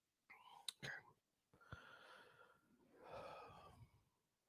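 Near silence with faint whispered speech off-mic and a couple of soft clicks.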